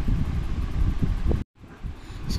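Low, steady rumbling noise with a few faint knocks, cutting out abruptly about a second and a half in, then returning more quietly.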